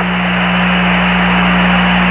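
Loud, steady hiss of radio static over a low hum on the Apollo 11 voice downlink from the Moon, the open channel band-limited like a radio link.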